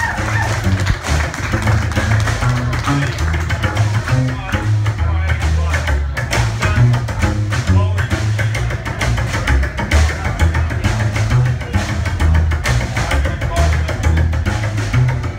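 Rockabilly band playing live: an electric guitar lead over walking upright double bass and a steady beat, with no vocal line while the guitarist is off the microphone.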